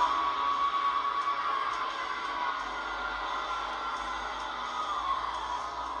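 Anime fight-scene soundtrack: dramatic music over a dense, sustained rush of noise, loudest at the start and easing slightly after about two seconds.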